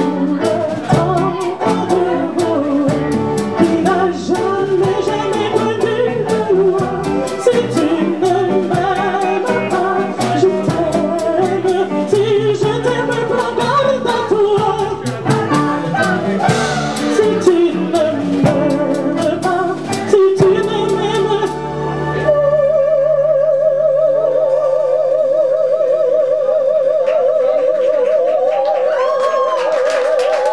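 Live solo singing into a microphone with strong vibrato, over instrumental accompaniment with a regular low bass pulse. About two-thirds of the way in, the accompaniment thins out and the voice holds one long, loud note with vibrato.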